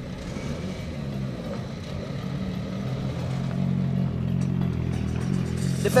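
Rally car engine running steadily at idle, a low even note that grows slightly louder toward the end.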